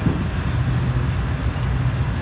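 A steady low rumble, like machinery running.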